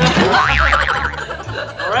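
A comic boing sound effect whose pitch wobbles rapidly up and down for about the first second, laid over upbeat background music with a steady beat; a quick rising glide comes near the end.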